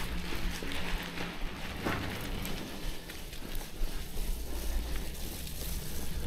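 Bicycle tyres rolling over a gravel and dirt track, with a low rumble of wind on the action camera's built-in microphones, which have a foam windscreen fitted.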